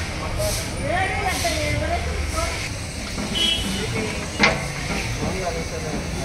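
People talking in the background over a steady hiss, with one sharp knock about four and a half seconds in.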